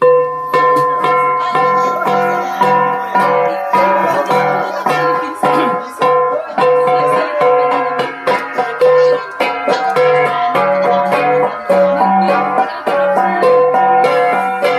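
Gangsa ensemble of flat bronze gongs struck with sticks in a quick, steady interlocking rhythm, each stroke ringing with a clear pitch.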